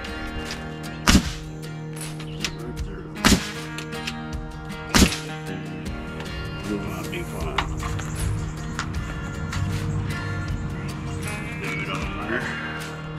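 Pneumatic framing nailer firing three times, about two seconds apart, driving nails into 2x4 framing lumber.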